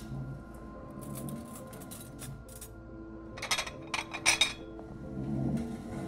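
Cutlery clinking against dishes at a dinner table: a few light clicks, then a cluster of louder, sharper clinks about halfway through. Soft music comes in near the end.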